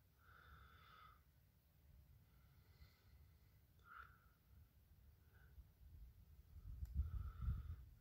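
Near silence: faint low background rumble that grows a little toward the end, with a few faint short sounds.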